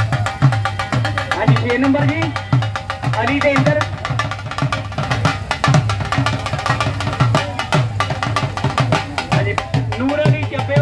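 Dhol drum played live at a fast, steady beat, deep bass hits about three times a second under quicker sharp stick strokes, the drumming that accompanies a village kushti bout. A voice calls out over it about two seconds in.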